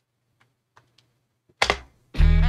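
A few faint, scattered clicks, then one louder short thump about a second and a half in: small handling noises as headphones are settled on the head and a hand moves to the desk.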